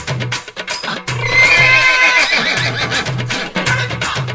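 Background music with a steady percussive beat. About a second in, a loud horse-whinny sound effect lasting about a second is laid over it.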